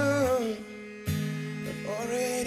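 Live band music: a sung phrase ends on a falling note, the band drops to a brief hush, then comes back in suddenly about a second in with acoustic guitar, cello and a sustained low bass note.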